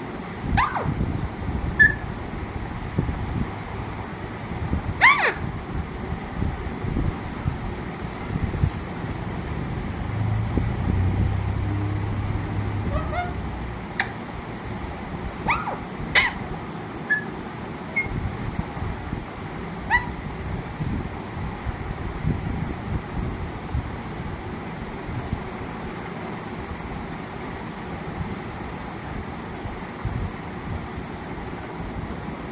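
Parakeet giving short, sharp calls, about six of them spaced several seconds apart, with a few brief chirps in between.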